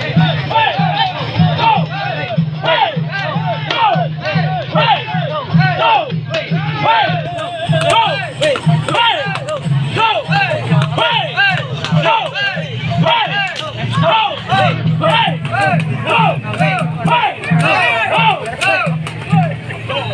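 Parade music with a steady, pulsing low beat, under a crowd of many voices shouting and cheering.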